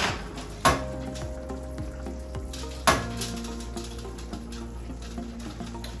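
A metal fork raking strands from a roasted spaghetti squash half, with three sharp clinks, over steady background music.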